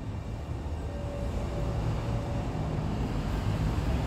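Steady low background rumble, with a faint thin tone heard briefly about a second in.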